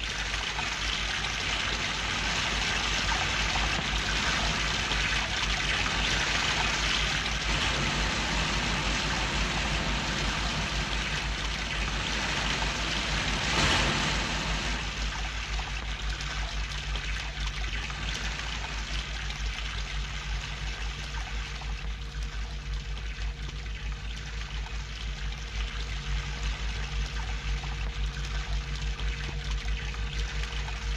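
Rushing water of a mountain stream and rapids, a steady hiss that is louder in the first half and eases off about halfway through. A low hum runs underneath.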